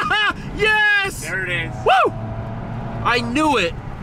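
Voices in a moving car, short bursts of talk or exclamations that are not clear enough to make out, over the steady low drone of the car's engine and road noise in the cabin.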